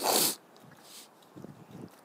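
A short, loud breathy burst like a snort or sharp exhale into a close microphone, followed by a fainter breath a moment later.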